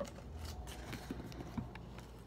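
Faint handling sounds: a few light taps and rustles as a small cut-out piece of cereal-box cardboard is handled.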